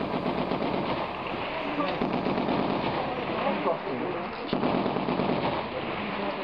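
Gunfire in the thick of a firefight, with many shots in quick succession throughout, and men shouting over it.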